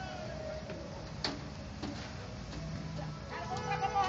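Low background noise of a crowd, then near the end a person's long, wavering call that falls in pitch.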